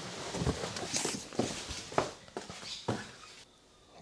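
A person moving about and handling a car charging cable and connector: a few scattered light knocks and clicks over faint room noise, dying away about three and a half seconds in.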